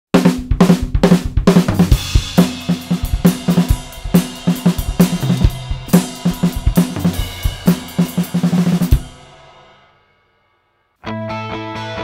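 Acoustic drum kit played solo: quick strokes on snare, toms and cymbals over a kick drum, ending on a last crash about nine seconds in that rings out to silence. About a second later, the guitar intro of a recorded song starts.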